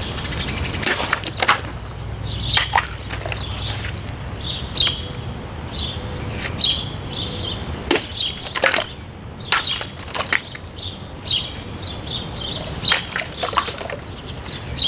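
A folding knife slashing through a water-filled plastic bottle, a sharp crack with water spraying about eight seconds in, with a few other clicks and knocks. Underneath, insects buzz steadily with a high pulsing drone and birds chirp.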